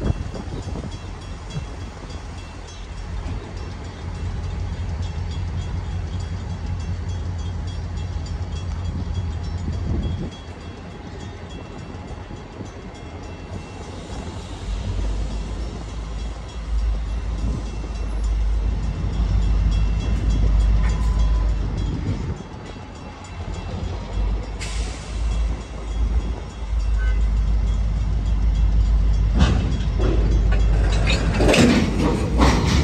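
A freight train's low, steady rumble as it stands or creeps along, rising and falling in stages and growing louder in the second half. A brief high hiss comes about 25 seconds in.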